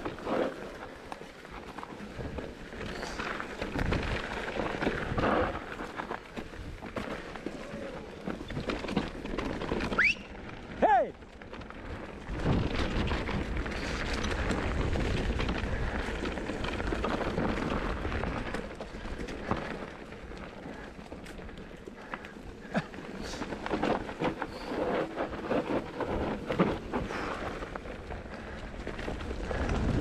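Mountain bike riding fast down a dirt forest trail: tyre rumble over dirt and roots with wind buffeting the microphone, swelling and fading with speed, and the bike rattling with frequent clicks and knocks. A brief squeal falling in pitch comes about ten seconds in.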